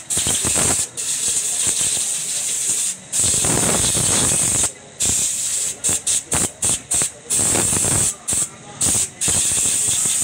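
Compressed-air blowgun hissing as it blows down a motorcycle engine. The air is held on for long stretches at first, then fired in a quick series of short bursts in the second half.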